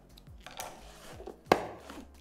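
Scissors cutting through black tape, a soft cutting rustle followed by one sharp snip about one and a half seconds in, as the tape is being stuck over a cardboard box.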